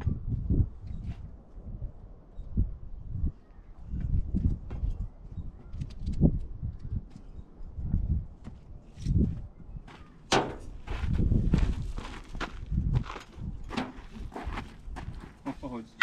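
Scattered knocks, scuffs and footsteps as a steel dumpster is pushed and shifted between a tractor's loader bucket and a concrete pad, over irregular low rumbling. A longer, louder noise comes about ten seconds in.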